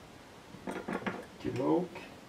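A man's voice muttering briefly twice, with a few light clicks or clinks between.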